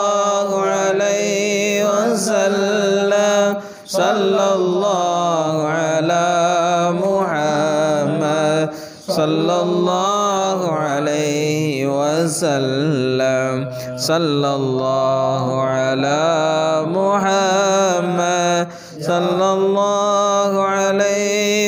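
Melodic chanting of salawat, blessings on the Prophet Muhammad, sung in long held and ornamented phrases. Short breaks come about 4, 9 and 19 seconds in.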